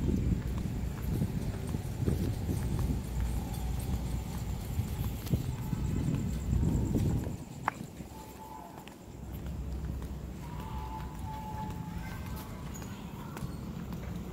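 Footsteps on pavement with rumbling handling noise from a phone carried while walking, uneven and loudest for the first seven seconds, then a sharp click and a steadier, quieter low rumble.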